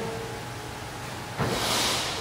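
An athlete drops from a pull-up bar about one and a half seconds in, with a dull landing, followed by loud, hissing breaths of exertion over steady background noise.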